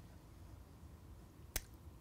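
Quiet room tone broken by one short, sharp click about a second and a half in.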